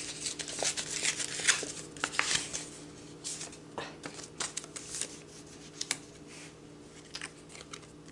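Paper envelope of a greeting card being opened and handled: dense crackling, rustling and tearing for the first few seconds, then scattered rustles and light clicks.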